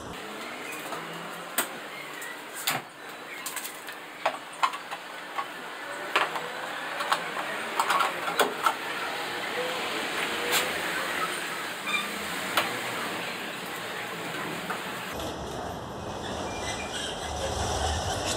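Scattered clicks and light knocks of hard plastic as a Fiat Uno's tail-light lens is unclipped and the reverse-light bulb is worked in its socket.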